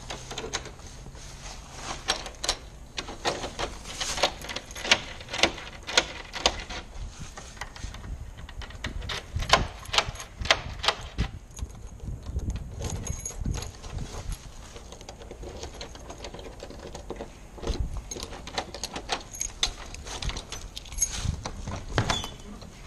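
Irregular metallic clicks and light knocks of a brass doorknob and deadbolt being handled and worked by hand, with some dull thumps against the door.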